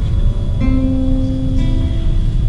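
Nylon-string classical guitar played solo: a new note is plucked about half a second in and left ringing with its overtones, over a low steady background rumble.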